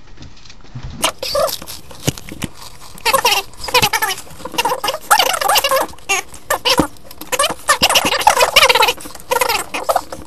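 Fast-forwarded audio of a boy eating Pringles: high-pitched, chipmunk-like sped-up voices and laughter with quick clicks and crunches, starting about a second in after a brief stretch of room tone.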